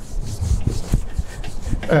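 Rubbing and scraping noises with a few soft knocks.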